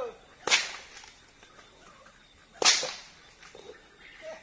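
A horse whip cracked twice, two sharp snaps a little over two seconds apart, to urge horses into moving.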